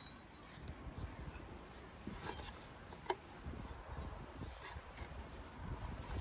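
Quiet handling sounds of a fan belt being worked by hand onto a tractor's alternator pulley: a few faint clicks, the sharpest about three seconds in, over a low rumble.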